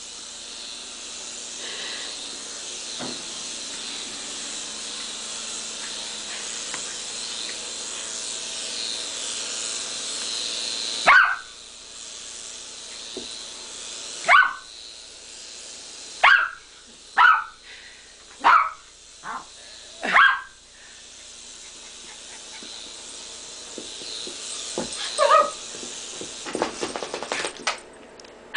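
Air Hogs Nighthawk toy helicopter's small electric rotor whirring steadily at a high pitch. It stops abruptly partway through, after which a small long-haired dog barks in a run of about seven short, sharp barks and once more near the end.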